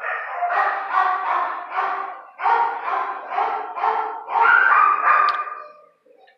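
Dogs barking repeatedly, a few barks a second, with short breaks about two seconds in and again near four seconds, stopping just before the end.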